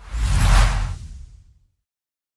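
A whoosh sound effect for an animated logo intro, with a deep low rumble under a wide hiss, swelling to a peak about half a second in and fading away over the next second.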